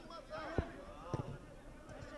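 A football struck twice in play, two short sharp thuds about half a second apart, with faint shouts of players on the pitch.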